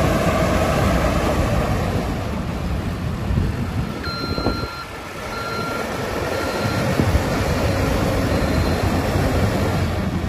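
Caterpillar TL642C telehandler's diesel engine running steadily as it drives. About four seconds in, a reversing alarm beeps four or five times, a little under two beeps a second, with fainter beeps later.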